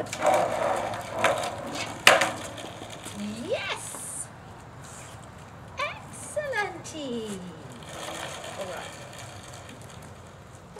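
A person's voice in wordless calls, one sliding up in pitch and then several sliding steeply down, alongside a sharp knock about two seconds in and some scraping noise near the start.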